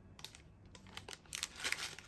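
Small clear plastic bag of screws being handled: soft crinkling of the plastic and a few faint clicks, mostly in the second half.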